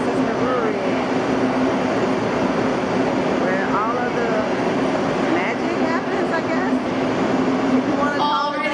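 Steady machinery hum with a constant low drone filling a large, echoing brewhouse hall, with scattered voices of a tour crowd over it.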